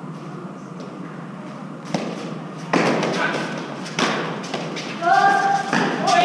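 An Eton Fives ball is struck with gloved hands and hits the court's concrete walls in a rally. There are four hard smacks, roughly a second apart from about two seconds in, each ringing briefly off the walls, and a player calls out near the end.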